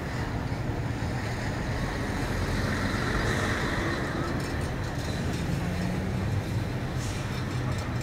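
Steady road traffic noise from a city street, with one vehicle passing a little louder about two to four seconds in.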